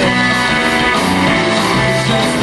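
Live rock band playing a guitar-led passage: electric guitars over bass, drums and keyboard, loud and steady.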